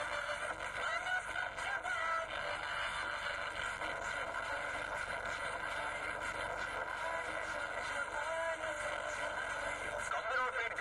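A song with a melody line plays steadily, thin and without bass, as from a horn loudspeaker. Under it runs a tractor engine.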